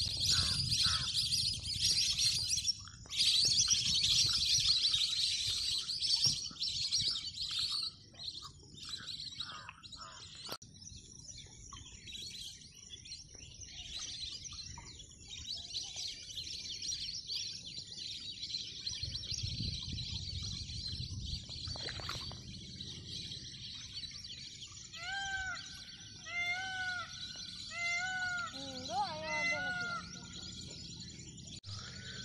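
Many small birds chirping in a dense chorus, loudest in the first eight seconds and softer afterwards, with a low rumble underneath. Near the end a louder bird call repeats about once a second in short arched notes.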